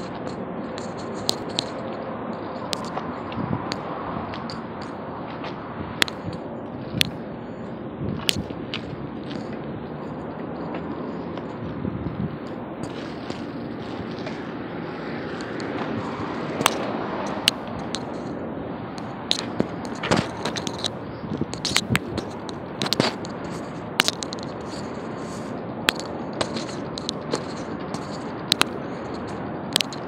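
Steady outdoor background noise with many sharp, irregular clicks and knocks, coming more often in the second half.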